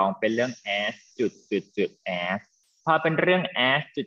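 A person speaking in short phrases, with a brief pause about two and a half seconds in.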